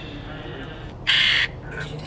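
A ghost-box app playing through a phone's speaker, putting out short, harsh bursts of chopped sound over a low hum. The loudest burst comes about a second in and a shorter one near the end.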